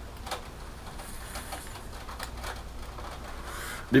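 Soft hissing with faint, scattered crackles as a pipe is lit with a lighter and drawn on, over a low steady hum in the room.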